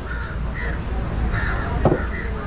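A large knife chopping into a bronze bream on a wooden block, one sharp strike near the end. Two short bird calls sound in the background, over a steady low outdoor rumble.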